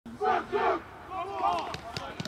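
A football team in a huddle shouting a team cry together: two loud shouts in quick succession, then several voices calling out over each other.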